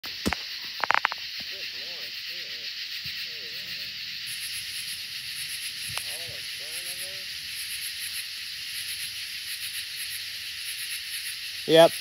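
Night insects droning steadily, with a fast pulsing high chirp joining in about four seconds in. A few sharp handling knocks come in the first second.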